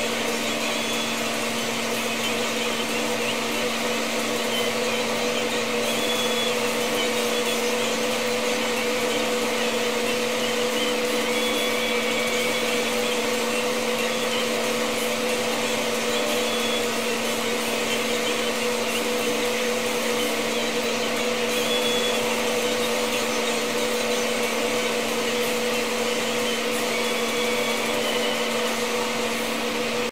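Steady, unchanging whir of a small electric motor with a constant hum.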